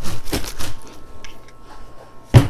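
Pine-bark bonsai soil mix rattling and shifting inside a white plastic tub as the tub is shaken to blend it: a rapid patter of clicks that dies away after about a second.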